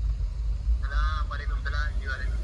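Low rumble of a slowly moving car heard inside its cabin, with a quick run of short, high-pitched, honk-like calls starting about a second in.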